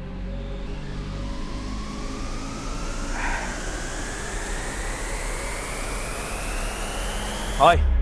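Suspense film score: a synth riser, one tone gliding slowly and steadily upward for about six seconds, with a growing hiss swell over a low steady drone. It cuts off as a man's voice comes in near the end.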